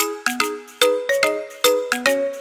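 Background music: a light melody of short struck notes that ring and fade, about two or three notes a second.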